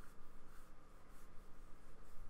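Flat paintbrush dragging wet acrylic paint across sketchbook paper: a few soft, faint brushing strokes.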